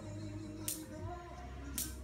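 Faint background music, a few steady held notes over a low hum, with a small click about a third of the way in and a short breath-like hiss near the end.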